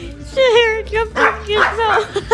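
Small dog barking and yipping, two high-pitched calls in quick succession.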